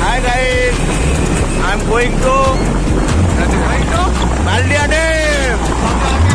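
Wind rush and road noise from riding a motorbike, with men's excited voices calling out over it and music with a bass line playing underneath.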